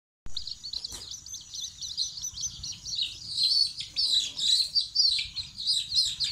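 A brood of young chicks peeping, a dense run of short high-pitched calls overlapping one another, growing louder from about three seconds in.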